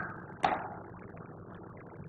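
A pause between words: a single short click about half a second in, then faint steady room hiss.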